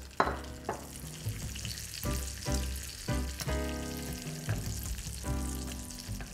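Blanched asparagus sizzling in hot butter in a frying pan as it is turned with metal tongs. Soft background music with held notes plays alongside.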